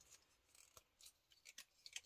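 Near silence, with a few faint clicks of a plastic action figure being handled.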